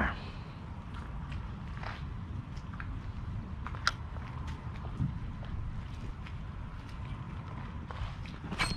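Low, steady rumble of wind on the microphone over open water, with a few faint clicks.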